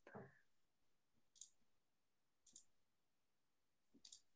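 Near silence broken by two faint mouse clicks about a second apart.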